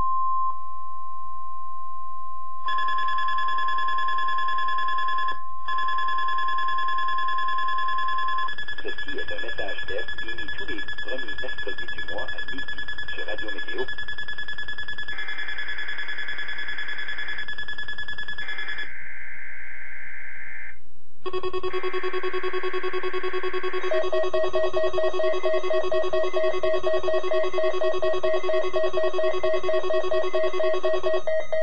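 Alert-equipped weather radio sounding Weather Radio Canada's monthly alert test: a steady high alert tone, then several shrill electronic tones together with short warbling data bursts. From about three-quarters of the way in, a fast-pulsing alarm beep sounds as the receiver's alert activates.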